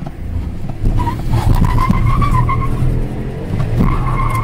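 Car tires squealing through a sharp turn: a wavering squeal from about a second in until nearly three seconds, and again near the end. Under it runs the Ford Ka's small 1.0-litre engine.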